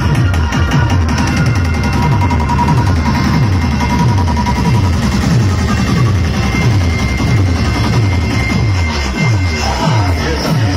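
Electronic dance music played very loud through towering truck-mounted DJ speaker stacks, with a deep bass note sliding down in pitch about twice a second.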